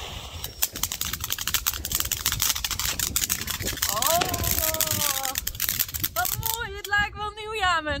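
Ground fountain firework spraying sparks, with a dense, rapid crackle and hiss that dies away about six and a half seconds in.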